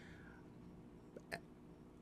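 Near silence: room tone with a faint steady hum, broken by a short mouth click from the speaker a little past the middle.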